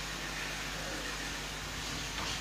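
Steady background hiss with a faint low hum and no distinct events: room tone and system noise in a pause of speech.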